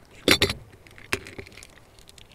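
A short clinking rattle about a quarter second in, then a few single sharp clicks, as a shotgun cartridge is cut open by hand and its shot pellets are handled on a wooden table.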